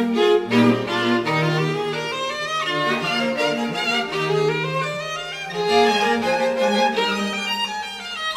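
Classical music for bowed strings: a violin line moving from note to note over sustained lower string notes.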